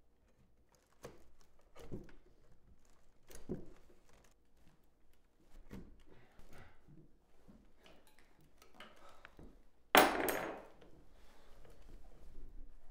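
Scattered soft knocks, clicks and rustles of hands working at rope bindings against a wooden chair. About ten seconds in comes a loud, sudden rush of noise lasting about half a second.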